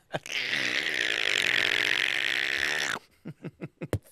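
A man making a long, raspy hissing sound effect with his mouth, as a prop noise in a mimed heist, lasting about two and a half seconds and cutting off suddenly.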